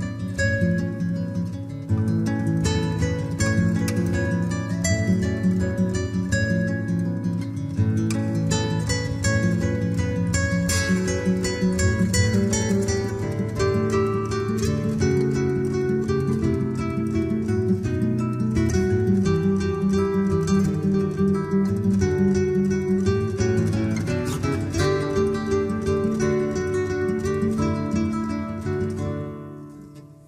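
Two nylon-string classical guitars playing an instrumental piece: a busy pattern of plucked notes over a steady bass line. About a second before the end the music drops away sharply, then comes back suddenly.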